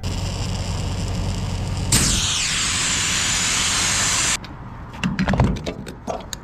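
Air hose inflating a truck tyre through a chuck on the valve stem, with a steady hum and hiss of air. A louder hiss starts about two seconds in and cuts off suddenly a little after four seconds, followed by a few clicks and knocks.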